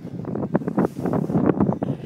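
Wind buffeting a handheld camera's microphone outdoors on a ski slope: an uneven rumble with many rapid, irregular crackles.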